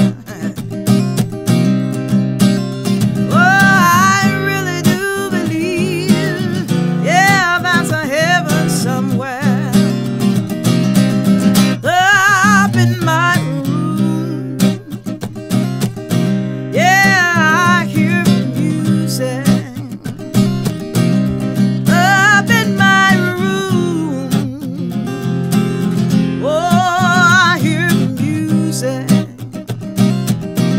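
Acoustic guitar strummed in a minor key, with a woman singing long, bending phrases that return every four to five seconds over the steady chords.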